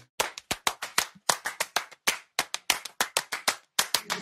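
Rhythmic hand claps in an uneven, syncopated pattern of about four to five a second, with no singing under them: the percussion intro of an a cappella pop song.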